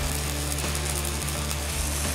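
Engine-driven arc welder running, with a steady low hum and a fast, even ticking.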